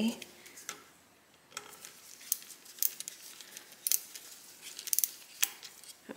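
Scattered light metallic clicks, a handful at irregular intervals, as a screwdriver backs a freshly loosened screw out of a Singer 66 sewing machine's cast-iron head.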